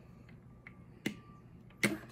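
Plastic marble-run track pieces clicking together: a light click about a second in, then a sharp, loud snap near the end as a curved track piece is pushed into place and connects.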